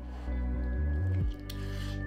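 A sauce-soaked French tacos squelching wetly for a moment about one and a half seconds in, over steady background music.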